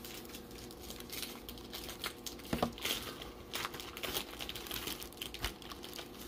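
Sealed foil-wrapped baseball card packs crinkling and rustling as they are handled and shuffled in the hands, with irregular small clicks.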